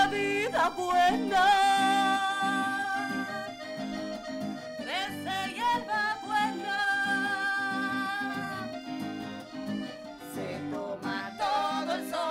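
Live cumbia song on piano accordion and acoustic guitar, with women singing long held notes over a steady strummed beat.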